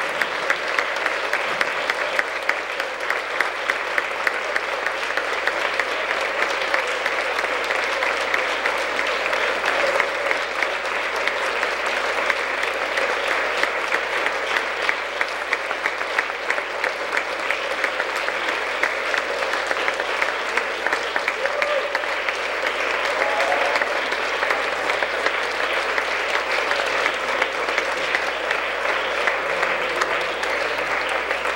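A large audience giving a standing ovation: many people clapping together, sustained and without a pause.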